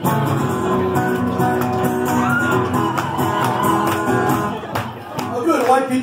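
Acoustic-electric guitar played live through the PA, chords ringing on, with audience voices and shouts over it. Talk and laughter come in near the end.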